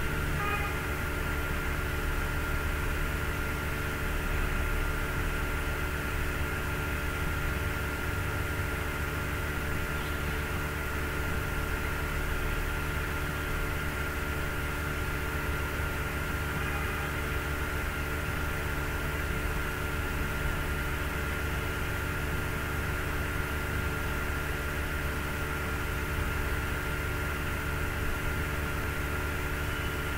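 Steady background hum and hiss carrying several constant tones, unchanging throughout.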